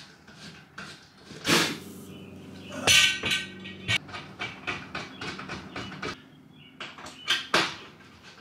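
Aluminium extrusion rail knocking and clanking against a plywood wall as it is positioned and fastened by hand: a run of irregular knocks and clicks. The loudest comes about three seconds in and rings briefly, and there is a steady low hum underneath.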